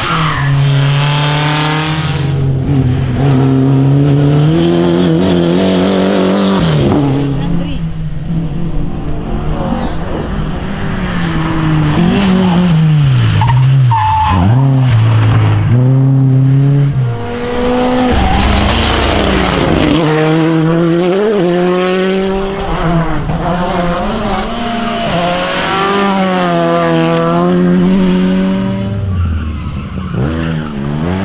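Rally cars at full throttle through corners, engine note climbing and dropping repeatedly as they rev out and change gear, with tyres spinning and sliding on loose gravel at the road edge.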